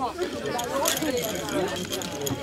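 Indistinct talking and chatter from people around a prize podium, with no clear words.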